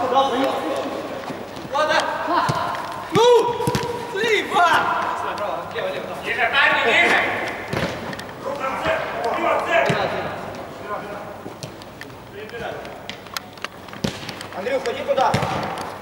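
Players' shouts and calls across a large indoor football hall, with several sharp thuds of a football being kicked, the loudest about three seconds in.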